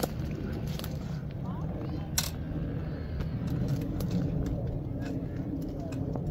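Orange tree branches and leaves rustling and clicking as someone reaches up into the tree for a fruit, with one sharp snap about two seconds in, over a low steady rumble.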